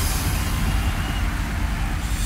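Electronic dance music in a breakdown: the beat drops out, leaving a low, dense backing with the treble dimmed. The treble sweeps back up toward the end.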